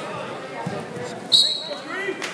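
Wrestling shoes squeaking on the mat as the wrestlers scramble for a takedown: a dull thump about a third of the way in, then a sudden, sharp high squeak just past halfway, the loudest sound, and a shorter rising squeak near the end. Crowd chatter runs underneath.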